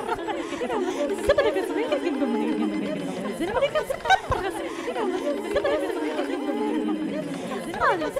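Many electronically processed voices layered over one another in an unintelligible babble, some sliding slowly down in pitch.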